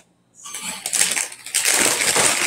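Plastic snack bag of mini pretzels crinkling and rustling as it is handled and opened, with the pretzels clattering inside. It starts about a third of a second in, after a short quiet moment.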